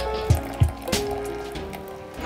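Background music with a steady beat, over a thin stream of hot water pouring from a gooseneck kettle onto ground coffee in an AeroPress.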